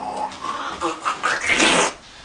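A man's short wordless mouth noises: a few small pitched squeaks and grunts, then a louder breathy rush of air near the end.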